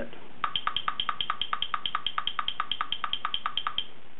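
Tempo Master metronome app clicking at its top tempo of 280 beats per minute, a quick even run of about four to five clicks a second from the device's small speaker. It starts about half a second in and stops just before the end.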